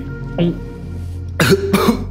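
A man clearing his throat and coughing in the second half, after a short throaty sound about half a second in, over a steady low drone of background music.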